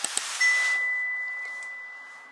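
A phone text-message notification chime: a single high ding that starts about half a second in and rings on, fading over about a second and a half. Just before it comes a brief whoosh with a couple of clicks.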